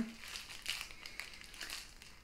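Faint crinkling of a packet of pocket tissues being handled in the hand.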